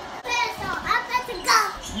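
A young child's high-pitched voice in several short cries and shrieks, with rising and falling pitch, as he runs about playing.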